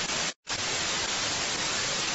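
Television static: a steady hiss of white noise, cut off briefly for a moment about half a second in.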